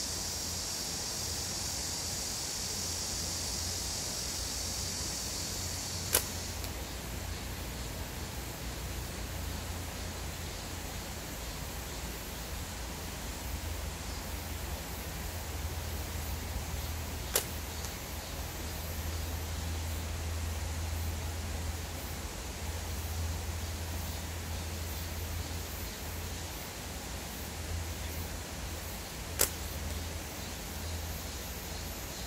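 Slingshot shot three times, about eleven seconds apart, each a single sharp snap as the bands are released. Insects buzz steadily until the first shot, then stop.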